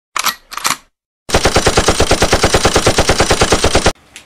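Gunfire: two single shots, then after a short gap a long automatic burst of about nine rounds a second that cuts off abruptly.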